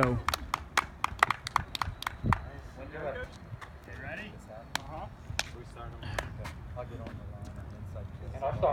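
A small group of people clapping, the claps scattered and irregular, thinning out after the first couple of seconds, with faint chatter.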